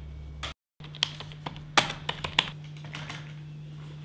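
Computer keyboard being typed on: irregular, scattered key clicks, after a brief cut to silence about half a second in.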